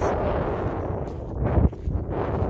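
Strong gusting wind buffeting a phone microphone: a low rumbling blast that swells to its loudest about a second and a half in.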